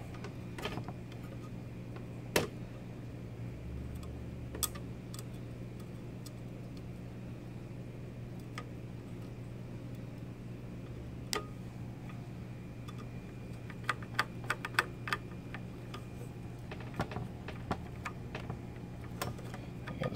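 Scattered light clicks and taps from a reef-light mounting bracket and its legs being handled and fitted together, with small screws started into the bracket with a screwdriver. One sharper click comes a couple of seconds in, and the clicks bunch up toward the end. A steady low hum runs underneath.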